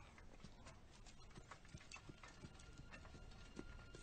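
Near silence with faint, irregular light clicks or taps, a few a second.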